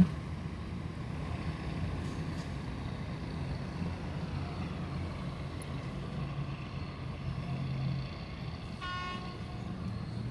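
Steady low rumble of engines and road traffic, with one short horn toot about nine seconds in.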